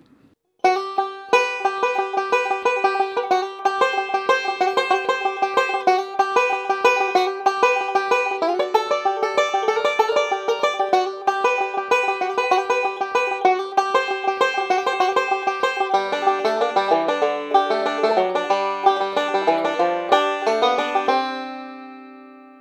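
Five-string resonator banjo picked with fingerpicks in fast, even rolls: one repeated up-the-neck backup pattern with slid notes over G and C chords. About three-quarters of the way through it drops to lower licks near the nut, and it ends on a note left ringing as it fades.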